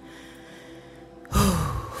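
Low steady hiss, then, about a second and a half in, a woman's loud, short breath close to the microphone.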